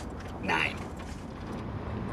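Steady low road rumble inside a moving car's cabin, with a short exasperated vocal outburst from a man about half a second in.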